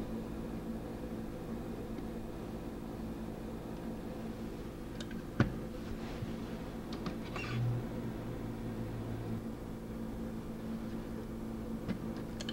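Steady low electrical hum, with one sharp click about five seconds in, a few faint light ticks after it and a short low thump.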